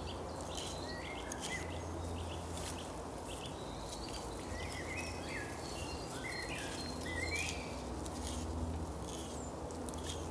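Small birds chirping on and off over a steady low outdoor rumble, with faint short rasping scrapes of a blunt knife stripping the bast off a dried nettle stem.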